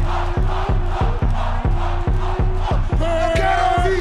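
Loud bass-heavy rap battle beat with regular kick drum hits, over a crowd of spectators shouting and chanting. A long held note comes in about three seconds in.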